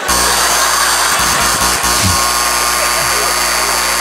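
A loud, steady chord held unchanged for about four seconds that starts suddenly and cuts off suddenly: the show musician's sting marking the end of the scene.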